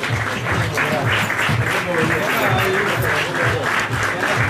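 Audience applauding, steady throughout, over background music and some voices.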